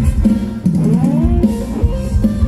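Live band music for Thai ramwong dancing: a steady drum-kit beat with guitar, and a rising melodic phrase about a second in.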